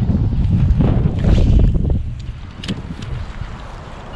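Strong gusty wind buffeting the microphone as a heavy low rumble, loud for the first two seconds and then easing off.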